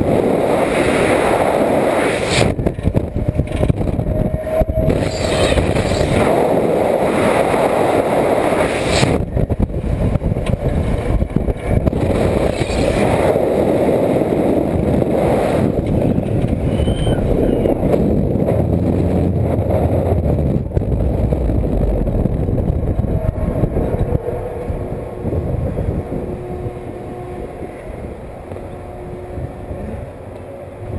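Wind rushing over the onboard microphone of a slingshot ride capsule as it flies and tumbles. The rush is loud and steady, then eases after about 24 seconds as the capsule slows.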